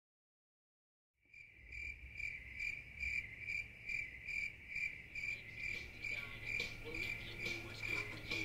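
Crickets chirping in an even rhythm, a little over two chirps a second, starting about a second in out of silence, over a low steady hum.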